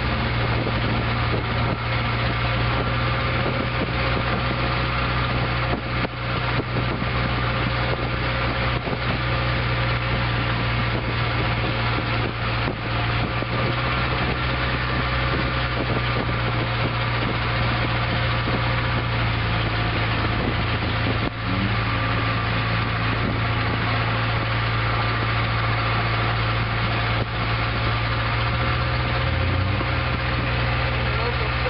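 Longtail boat engine running steadily at speed, a loud, even drone with no change in pitch.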